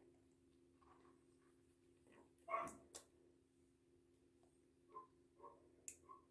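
Near silence over a faint steady low hum, broken by one short soft vocal sound about two and a half seconds in and a few faint clicks near the end.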